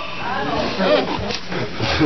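Several voices calling out over one another, tangled and wavering: church congregation responding aloud to the preacher.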